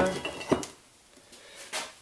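Metal clanks from a Ford 8.8 differential's stamped-steel cover and cast housing being handled: one sharp clank about half a second in and a lighter knock near the end. A held tone dies away at the very start.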